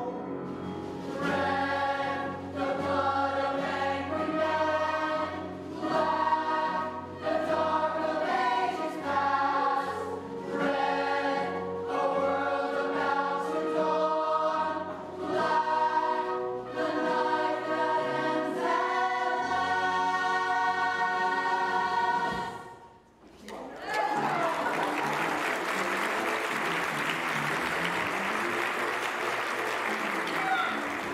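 Musical-theatre cast singing together in chorus with a live band, in phrases of a second or two, ending abruptly about three-quarters of the way through. Audience applause follows to the end.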